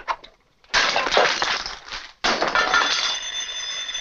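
A gramophone record being smashed: two crashes of breaking, one under a second in and one a little after two seconds, the second trailing into a steady high ringing. A few brief scratchy clicks come just before the first crash.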